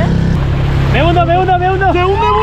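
Small 6-horsepower outboard motor running under throttle, its note shifting slightly a moment in. From about a second in, a long drawn-out shout rides over it.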